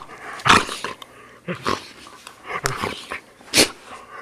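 A black poodle making short vocal sounds while being handled. There are about four separate bursts, the loudest about half a second in and another near the end.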